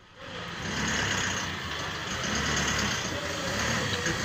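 Minibus engine running close by. It comes in loud about a quarter second in, then holds steady with a low rumble.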